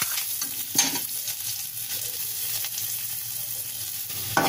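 Chopped garlic sizzling in hot oil with browned cumin in a metal kadhai, stirred with a metal spatula that scrapes against the pan, with one sharper knock of the spatula just under a second in.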